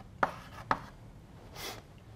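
Chalk writing on a blackboard: two sharp chalk taps in the first second. Near the end comes a short rustle of paper notes being picked up.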